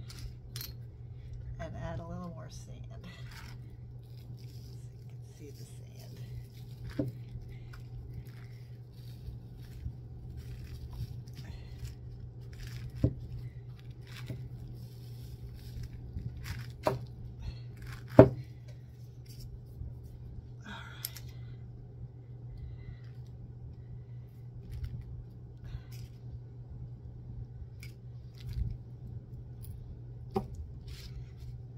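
Scattered small clicks and taps of shells and craft supplies being picked up and set down on a plastic-covered table. The sharpest tap comes about two-thirds of the way through, over a steady low hum.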